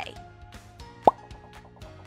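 Soft background music with one short, rising 'plop' sound effect about halfway through.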